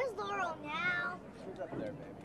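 A person's high-pitched shout: two drawn-out cries in the first second, the first sliding down in pitch and the second held with a wavering pitch, followed by fainter voices in the background.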